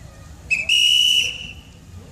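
Railway locomotive whistle sounding as the locomotive approaches: a brief toot, then a longer high-pitched blast lasting about a second that fades away.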